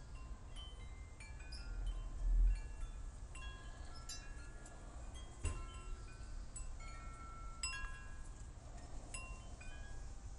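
Chimes ringing at irregular moments, with several clear high tones overlapping and dying away, over a low rumble that swells briefly about two seconds in.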